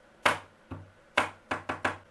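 Fingers tapping on a cabinet top: about six sharp, irregular taps, three in quick succession near the end.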